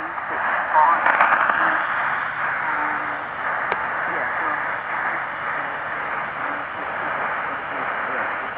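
Tecsun portable shortwave radio receiving ABC Australia on 2325 kHz AM: a weak, fading signal, with faint speech buried under a steady hiss of static. A single click sounds a little under four seconds in.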